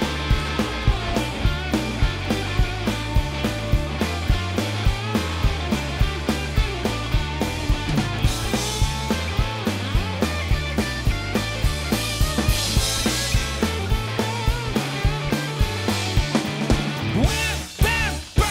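Live rock band playing an instrumental passage: electric guitar over a steady drum-kit beat and a stepping bass line. The band drops away briefly near the end.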